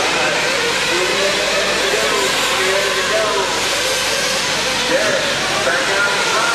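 A field of 1/8-scale RC truggies racing on a dirt track, their engines blending into a loud, steady, high whine with voices talking over it.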